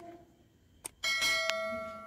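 A bell-like chime strikes about a second in, is struck again half a second later, and is left ringing and slowly fading.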